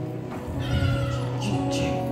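A choir sings over steady held accompaniment chords. A high voice glides above them from about half a second in until near the end.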